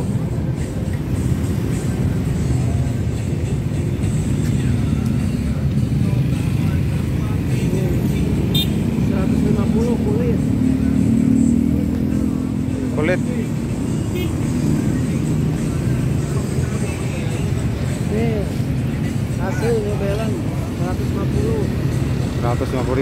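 Steady low rumble of road traffic, motor vehicle engines running, swelling a little around ten seconds in, with scattered voices.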